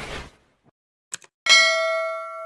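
Subscribe-button animation sound effect: two quick mouse clicks a little after a second in, then a bright bell ding with several ringing tones that rings on. A hiss dies away at the very start.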